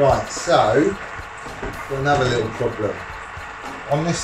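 A man talking, with background music under it.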